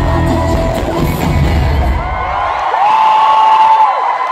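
Live pop concert music with a heavy bass beat playing through an arena sound system; the music stops about two and a half seconds in and a large crowd cheers and screams.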